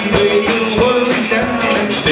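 A live band playing with electric and acoustic guitars over a drum kit keeping a steady beat.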